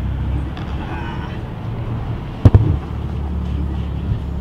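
Low, steady car engine and road rumble heard from inside the cabin as the car moves slowly. A single sharp knock comes about two and a half seconds in.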